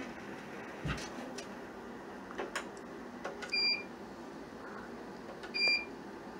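Ultrasound scanner giving two short, high electronic beeps about two seconds apart, over a steady low machine hum with a few soft clicks.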